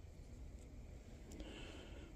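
Quiet room tone with a faint low hum and one faint click about one and a half seconds in.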